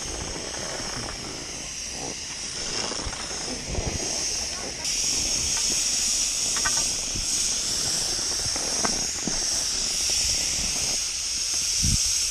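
Steady high hiss of snowmaking guns blowing, which steps up louder about five seconds in.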